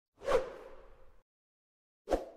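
A whoosh transition sound effect for an animated title card: one sudden swish that fades out over about a second.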